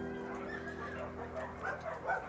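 Puppies eating together from a shared bowl, with faint small whimpering and feeding noises over a steady low hum that fades out about a second and a half in.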